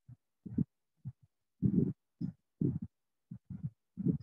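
A voice coming through a video call in choppy, muffled fragments, cutting in and out with dead silence between: the sign of a participant's unstable internet connection breaking up the audio.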